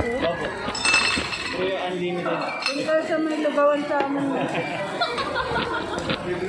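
Voices talking amid restaurant chatter, with a sharp clink of metal cutlery against tableware about a second in.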